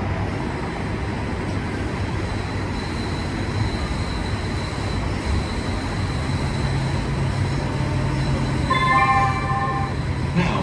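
A light rail train running along its track, heard from inside the car: a steady rumble of wheels on rail with a faint high whine, and a low hum that grows stronger about six seconds in. Near the end comes a short cluster of several high tones together.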